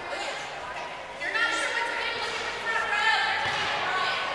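Young children's high voices shouting, two louder calls about a second and a half apart, echoing in a large hall.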